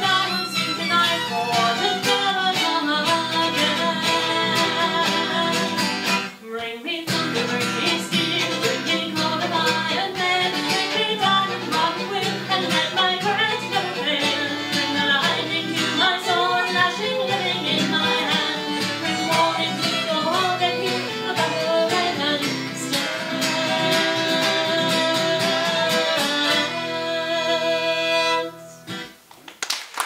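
Acoustic folk band playing the close of a song: strummed acoustic guitar and violin, with a short break about six seconds in. Near the end a final chord rings out and fades, and applause starts just as it dies away.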